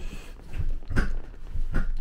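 RV couch seat being tipped forward by hand on its hinged metal frame: upholstery rubbing, with two knocks from the mechanism, about a second in and again near the end.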